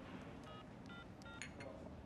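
Phone keypad tones as a number is dialled: about four short beeps in quick succession, faint under quiet room tone.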